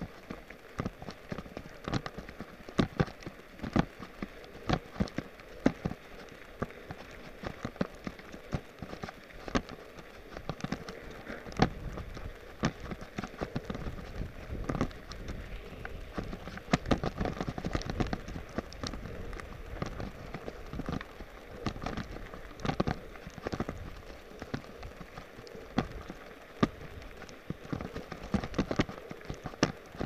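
A mountain bike rolling over a rough gravel dirt track: irregular sharp knocks and rattles as it jolts over bumps, over the crunch of tyres on gravel. A heavier low rumble comes in the middle.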